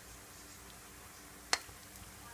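A black plastic slotted serving spoon knocks once against dishware with a single sharp click about one and a half seconds in, over a faint steady hum.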